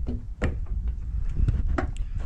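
Handling of a Honda Civic's trunk lid as it is raised: a few sharp clicks and knocks, one about half a second in and two near the end, over a low rumble.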